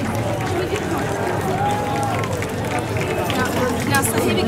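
Outdoor crowd ambience: background voices and chatter over a steady low rumble, with no one speaking up close.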